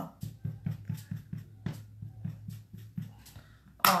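Soft, quick dabbing taps of a makeup applicator picking up dark blush and patting it onto the centre of a felt flower, about five light taps a second, over a faint steady low hum.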